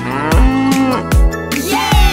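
Cow mooing, one long moo and a second beginning near the end, over a children's song backing track with a steady kick-drum beat.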